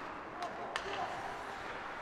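Ice hockey rink ambience from live play: a steady hiss of skates on the ice, with two sharp clacks of hockey sticks and puck about half a second and three quarters of a second in.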